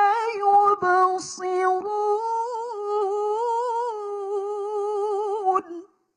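A woman reciting the Qur'an in melodic tilawah style, holding long ornamented notes with a wavering vibrato, then breaking off abruptly near the end.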